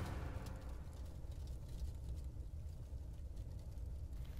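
Low, steady rumble with a faint crackle above it: the fading tail of a logo sting's sound effect.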